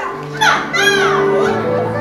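A single high, gull-like cry that rises and falls in pitch, about half a second in, over soft music with long held notes that sets in at the start.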